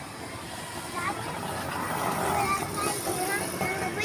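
A motor vehicle passing on the street, its sound swelling about a second in and holding, with faint voices underneath.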